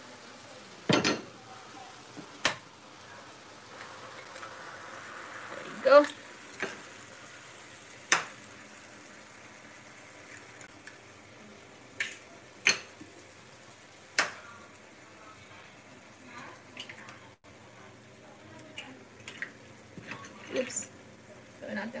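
Eggs cracked into a stainless steel pan of simmering tomatoes and onions, with a wooden spoon working in the pan: a series of sharp knocks a few seconds apart, over a low, steady sizzle.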